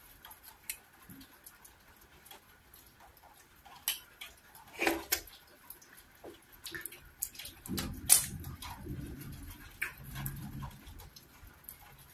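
Close-miked eating sounds: wet mouth clicks and smacks and chewing as a person eats cocoyam fufu with slimy ogbono soup by hand. The clicks are scattered, with a sharp louder smack about eight seconds in and a denser stretch of chewing around it.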